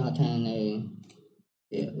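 A man's voice talking in Khmer, trailing off about a second in into a brief pause and then resuming, with a faint computer-mouse click in the pause.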